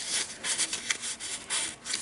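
Stiff paper card tags rubbing and sliding against each other and the journal pages in the hands, a series of short, irregular dry scrapes.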